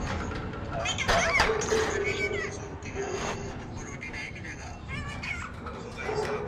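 Alexandrine parakeet calling: a run of squeaky, wavering calls that bend up and down in pitch, the loudest about a second in.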